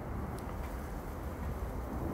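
Steady low background rumble of outdoor ambient noise, with a faint click about half a second in.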